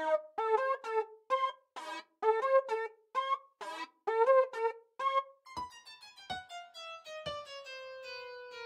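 Instrumental intro of a children's song on a keyboard: a bouncy melody of short, separate notes, then from about five and a half seconds a descending run of ringing notes that fade, with a few soft low hits.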